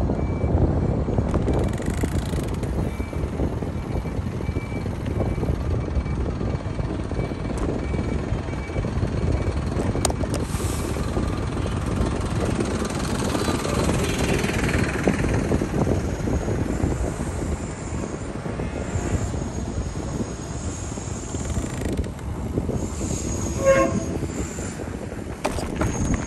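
Wind buffeting the microphone of a rider cycling along a road: a steady rumbling noise. A brief pitched tone sounds near the end.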